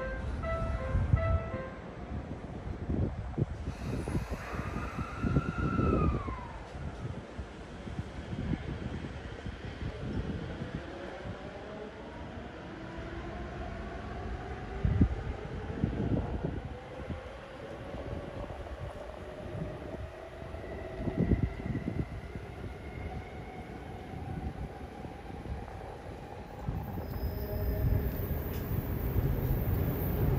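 JR Chuo-Sobu Line commuter trains at a platform: one pulling out and another running in, their electric traction motors whining in gliding pitches over steady wheel-and-rail rumble with occasional thumps. A falling whine a few seconds in, then several whines slowly rising in pitch through the middle.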